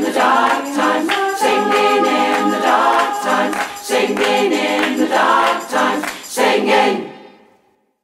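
A choir singing a song, fading out to silence near the end.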